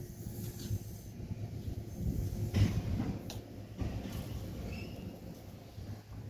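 Footsteps on a concrete path and handling noise from a handheld phone, over a low outdoor rumble that peaks about two and a half seconds in.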